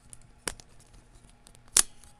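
Handling noise from the recording device being grabbed: a few sharp clicks and knocks, one about half a second in and the loudest near the end.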